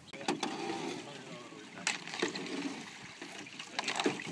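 A few sharp knocks on an aluminium jon boat as a paddle is handled and paddling begins, the loudest about two seconds in.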